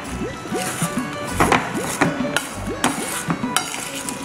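A metal spoon stirring thick, stiff millet dough in a stainless steel bowl, with a series of scrapes and knocks against the bowl's side.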